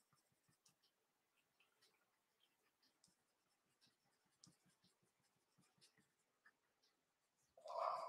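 Faint scratching of a Caran d'Ache Pablo coloured pencil worked in short strokes on paper, with a brief louder sound near the end.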